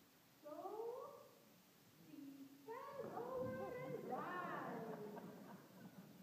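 Children's voices wailing: one rising cry about half a second in, then several overlapping, drawn-out wails from about three seconds in.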